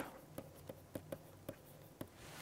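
A stylus writing on a pen tablet: a string of faint, short taps and ticks as the pen tip strikes and lifts off the surface while handwriting.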